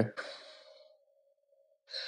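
A pause in conversation. A spoken word trails off, then it goes quiet apart from a faint steady hum, and a man breathes in near the end before he speaks again.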